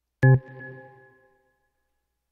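A single electronic notification chime: one sharp ding whose several tones ring on and fade out over about a second and a half.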